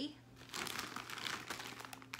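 Crinkling, rustling handling noise as a thin synthetic garment is held up and squeezed, starting about half a second in.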